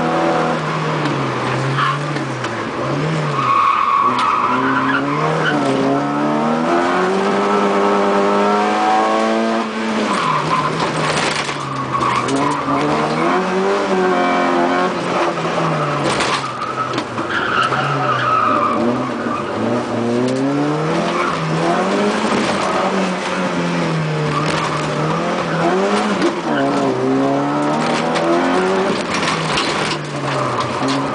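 Rally car's engine heard from inside the cockpit at racing speed, its revs climbing and dropping again and again with gear changes and corners, with tyre squeal at times. There are a couple of sharp knocks in the middle.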